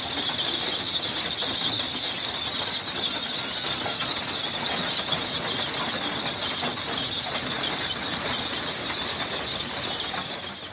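A large flock of young gamefowl chicks peeping without pause: many high, overlapping peeps, several a second, each falling quickly in pitch.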